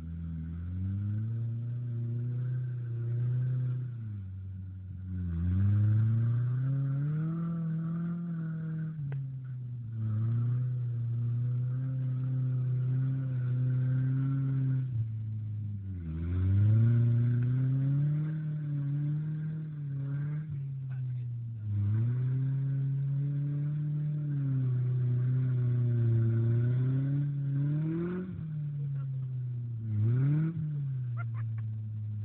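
Mazda B2300 pickup's four-cylinder engine held at high revs under load while the truck is stuck in a mud hole. The revs drop sharply and climb back up about five and sixteen seconds in, with a quick rev near the end.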